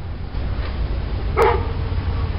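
A three-month-old black Labrador puppy gives one short bark about halfway through, over a steady low rumble.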